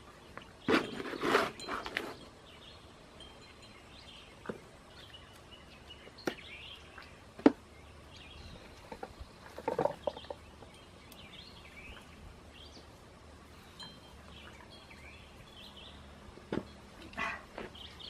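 Faint bird chirps over a quiet garden background, broken by handling noises: a short scraping rustle about a second in, a few sharp clicks and knocks, and another brief rustle about ten seconds in, from hands and a trowel working potting soil around a planter.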